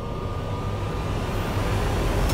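Dramatic background score: a low rumbling drone that swells gradually in loudness, building tension.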